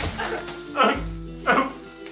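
Two short dog-like yelps, each falling sharply in pitch, over steady background music.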